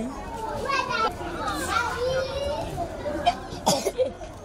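Young children's voices talking and playing, with two sharp knocks near the end.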